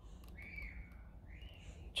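Two faint bird-like chirps, one about half a second in and one just before the end, over a low steady room hum.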